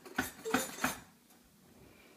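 Small metal baking pan clinking and scraping as it is pushed through the slot of a toy Easy-Bake oven: three quick clinks in the first second, then quiet.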